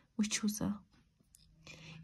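A woman's voice: a few soft, half-whispered syllables in the first second, then a pause.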